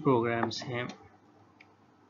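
A man's voice speaking Urdu for about the first second, then near silence with one faint click.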